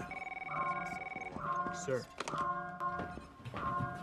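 An electronic ringing signal, a pitched tone that repeats about once a second, over film score.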